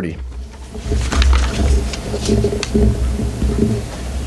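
Pages of a Bible being leafed through on a lectern close to the microphones: low uneven rumbling thumps of handling with light papery clicks, and a low muffled voice under it.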